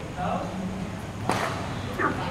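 A badminton racket striking a shuttlecock once, a sharp crack about a second and a quarter in, with a short echo from the large hall.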